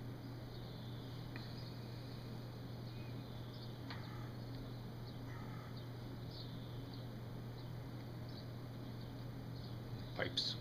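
Quiet room tone with a steady low hum, and a few faint small clicks and puffs as a man draws on a tobacco pipe that keeps going out.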